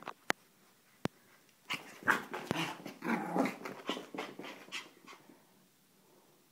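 Small Maltese dog making rough, breathy play noises in a run of short sounds from about two to five seconds in, after two sharp clicks near the start.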